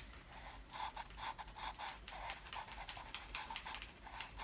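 Black felt-tip marker drawing on a cardboard toilet paper roll: a soft scratching rub in a quick series of short strokes.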